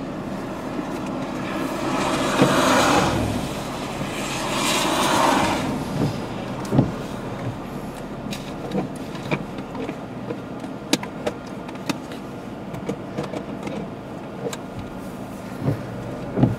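Steady outdoor rushing rumble that swells twice, about two and four seconds in, then settles into a lower steady noise with scattered light ticks and clicks.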